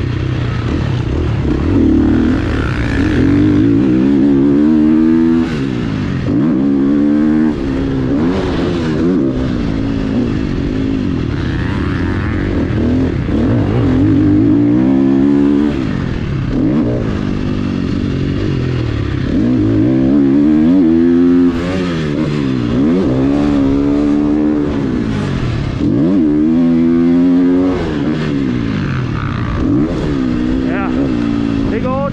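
Dirt bike engine heard from the rider's onboard camera while lapping a motocross track under hard throttle. The pitch climbs sharply and drops again over and over, about every two to three seconds, as the throttle is opened through the gears and rolled off for corners and jumps.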